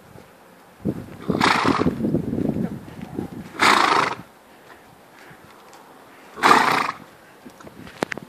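A horse neighing in three short calls, each about half a second long and two to three seconds apart, with a low rumbling noise under the first two.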